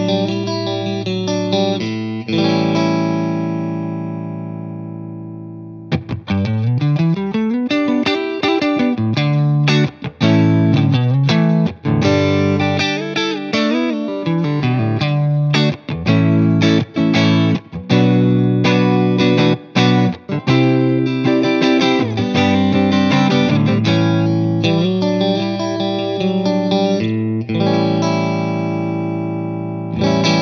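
Electric guitar playing. A Suhr Classic S Pro with V70 single-coil pickups lets a chord ring out and fade. About six seconds in, a Suhr Classic S Antique with ML Standard single coils and slightly dead strings takes over with rhythmic chord riffs and slides.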